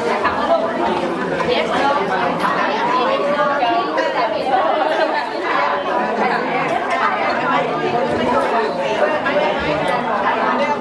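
Many people talking at once, a steady hum of overlapping conversation from a crowd.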